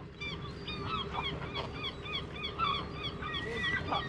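Many seagulls calling at once: a constant overlap of short cries that fall in pitch, which sound incredibly noisy.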